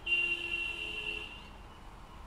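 A vehicle horn sounding once for about a second and a half, a steady two-note blare that starts suddenly and then fades.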